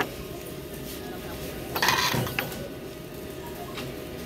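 Phone being handled close against clothing, with a loud rustling scrape about two seconds in and a few sharp clicks, over the background murmur and clinks of a busy supermarket.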